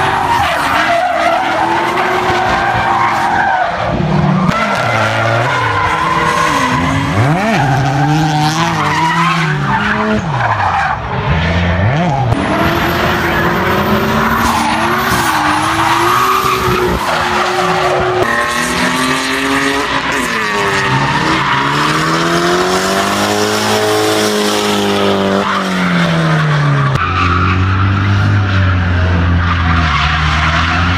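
Drift cars, among them a red BMW, sliding through corners, their engines revving hard and rising and falling in pitch with the throttle over the hiss of spinning, smoking tyres. Near the end the engine note settles lower and steadier.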